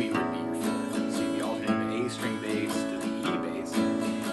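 Acoustic guitar played in a country-waltz strum: a picked bass note on a low string, then down-up strums of the chord, in a steady run of strokes.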